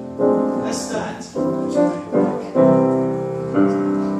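Piano playing a hymn accompaniment in a succession of slow, sustained chords, a new chord struck every half second to a second.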